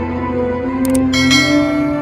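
Background music, with a short click and then a bright bell chime a little past one second in, ringing out: the sound effects of a subscribe-button animation, a mouse click followed by a notification-bell ding.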